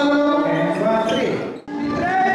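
People talking in a large, echoing hall, cut off abruptly about three quarters of the way through. Music with a singer begins right after the cut.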